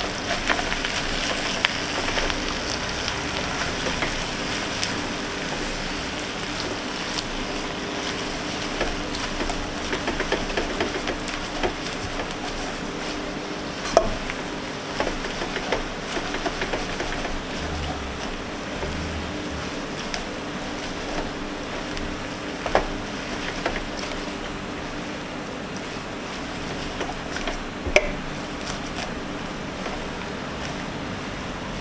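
Water spinach, tempeh and egg sizzling in a hot wok as they are stir-fried with a slotted metal turner: a steady frying hiss that eases slightly after the first few seconds, with a few sharp clicks of the turner against the pan.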